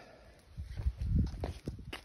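A few irregular footsteps on stone paving slabs, soft thumps and light knocks with a low rumble, as the camera is carried closer.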